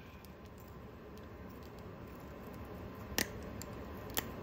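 Faint steady shop background with a low hum, then a single sharp metallic click about three seconds in as welding pliers are brought against the freshly plasma-cut steel plate.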